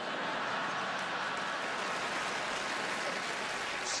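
Large audience laughing and applauding together in a steady wash of clapping and laughter.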